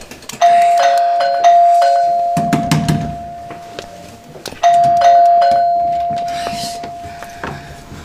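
Electronic doorbell chime rung twice, about four seconds apart, each time a two-note ding-dong that rings on and fades slowly.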